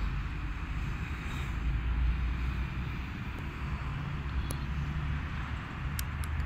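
Steady low rumble and hiss of outdoor city traffic, with a single faint click about four and a half seconds in.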